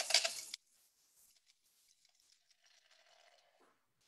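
The tail of a man's voice in the first half second, then near silence: no sound of the bead chain pouring out comes through.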